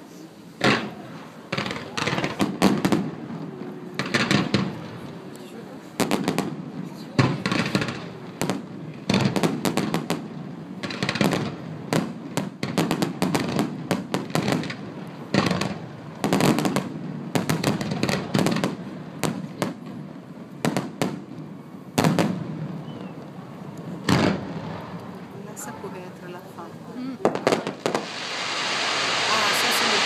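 Aerial fireworks display: an irregular run of shell bursts and bangs, several close together at times. Near the end a dense crackling hiss from glittering stars builds and holds, like waves arriving on a beach.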